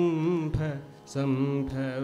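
Male Carnatic vocalist singing long held notes with wavering ornaments, in two phrases with a short breath about a second in, and a couple of soft drum strokes underneath.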